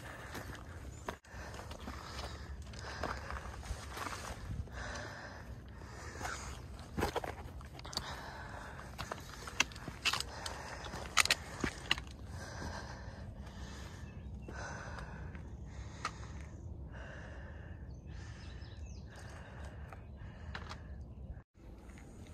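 A hiker's footsteps on a rocky dirt trail: irregular crunches and scuffs of boots on stones and gravel over a steady outdoor hiss.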